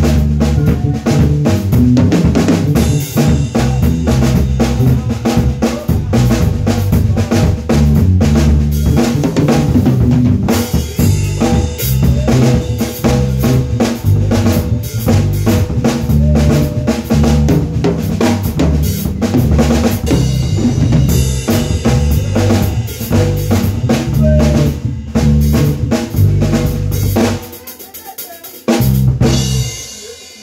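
A live band in a small room playing a steady groove, loud, with drum kit and electric bass guitar to the fore. The playing breaks off a few seconds before the end, followed by one short burst.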